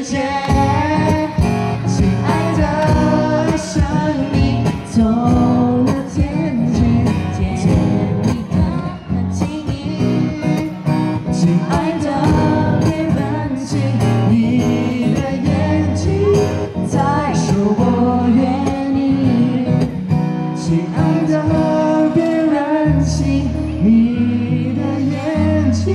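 Live acoustic pop song played through a small PA: a young singer's lead vocal over acoustic guitar and keyboard.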